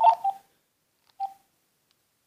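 Two short electronic telephone beeps about a second apart, the first a little longer, from a phone as a call is being connected.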